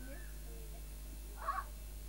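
A brief high-pitched vocal squeal about one and a half seconds in, after a faint gliding voice near the start, over a steady low hum and tape hiss.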